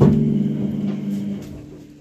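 A handpan (hang drum) struck once; its steel note rings with several overtones and fades away over about a second and a half.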